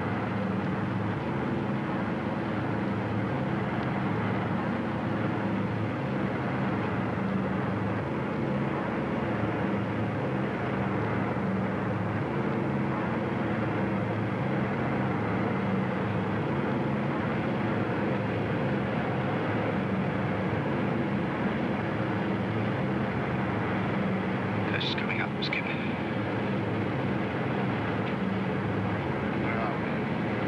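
Steady, even drone of a WW2 bomber's piston engines, a low hum with a slight pulsing beat.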